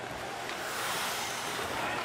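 Steady ice-rink ambience of a hockey game broadcast: an even hiss of noise with no clear single event, growing slightly louder toward the end.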